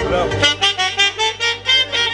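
Live wedding band music: a sung phrase ends and a saxophone takes over with a fast run of short, separate notes, about six a second, over a steady low backing.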